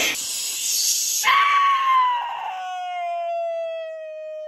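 A man's voice: a breathy hiss, then one long, high falsetto wail that slides slowly down in pitch and is held.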